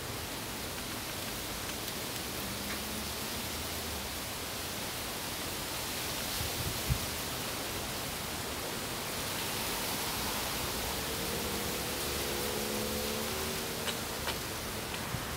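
Steady outdoor background hiss with no clear bird calls. A single click comes about seven seconds in, and a faint engine hum from a vehicle starts to come in near the end.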